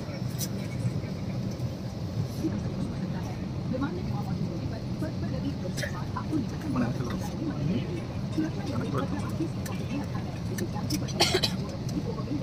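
Steady low hum of an airliner cabin, with faint, indistinct voices over it and a brief sharp click near the end.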